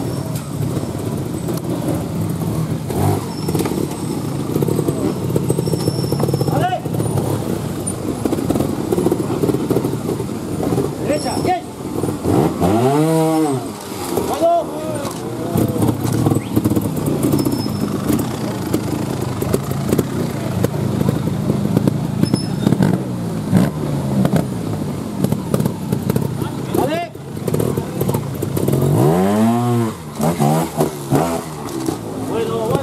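Single-cylinder trials motorcycle engine blipped hard twice, each rev rising and falling in pitch, once a little before halfway and again near the end, as the rider climbs through a rocky section. Between the revs it runs low over a steady murmur of spectator voices.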